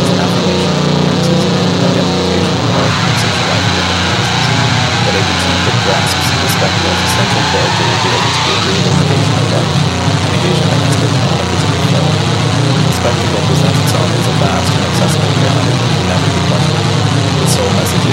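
Loud, dense, distorted sound with a constant low drone underneath and scattered sharp crackles, steady in level throughout: a noisy, music-like bed with voices mixed in.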